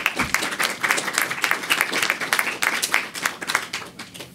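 Audience applauding, many hands clapping at once, dying away just before the end.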